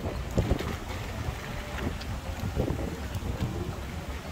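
Wind rumbling on the microphone, with a few scattered clops of horses' hooves walking on pavement.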